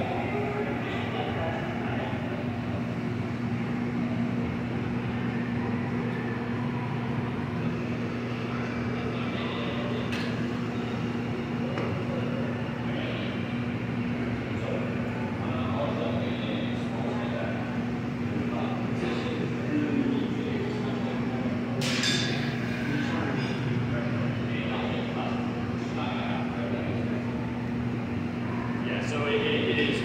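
Steady hum and roar of a glassblowing studio's gas-fired furnaces and ventilation fans, with indistinct voices over it and a short sharp clatter about two-thirds of the way through.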